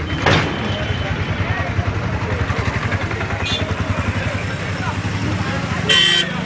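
Road traffic with a vehicle engine running steadily close by, a low rapidly pulsing rumble, and a brief loud sound at the very end.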